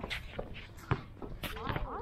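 Indistinct voices on a basketball court with a few sharp knocks, the loudest just under a second in.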